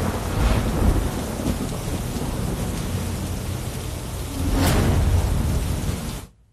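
Heavy rain falling steadily, with a deep low rumble underneath throughout; the sound swells louder about four and a half seconds in.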